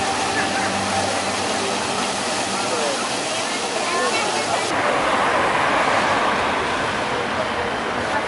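Steady rush and splash of the Merlion fountain's water jet pouring into the bay, with a crowd talking faintly in the background. The sound turns duller a little over halfway through.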